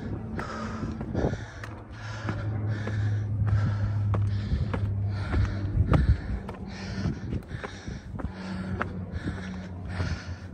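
Heavy, fast panting of a winded man climbing steep stone steps, about two breaths a second, with footsteps scuffing on gravel and stone. A low steady hum runs under it for a few seconds in the middle.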